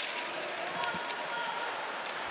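Ice hockey arena ambience: a steady crowd murmur with a few light clicks of sticks and puck on the ice.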